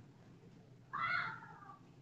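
A single short animal call, falling in pitch, starting abruptly about a second in and lasting under a second, over a faint steady background hum.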